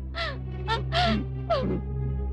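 Short, high-pitched sobbing cries from a person weeping, several in a row, over steady background film score.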